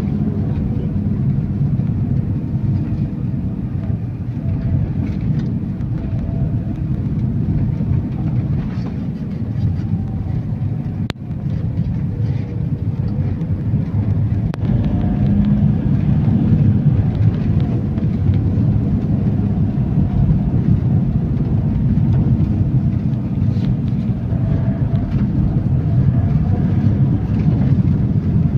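Steady engine and road rumble heard from inside a moving vehicle, with one sharp click about eleven seconds in.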